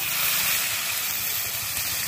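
Whole cumin and other spices sizzling steadily in hot oil in an iron kadai, just after going into the oil.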